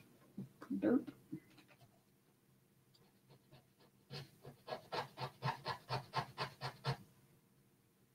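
Faint, rhythmic back-and-forth scratching strokes, about five a second for some three seconds, starting about halfway through: a metal brooch being scratched to test whether it is solid silver or only silver-plated.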